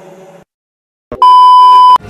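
The tail of a rap song fades out into dead silence, then a loud, steady electronic beep sounds for under a second and cuts off abruptly: an edited-in beep tone.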